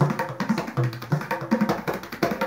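A tabla pair played by hand in a quick, dense run of strokes: crisp ringing strokes on the right-hand dayan over deep bass strokes on the left-hand bayan, some of which bend upward in pitch.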